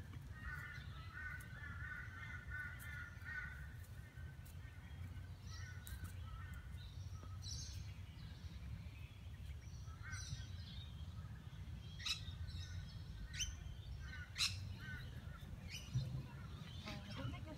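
Wild birds calling: a run of quick warbling notes in the first few seconds, then scattered chirps and a few short, sharp calls near the end, over a steady low rumble.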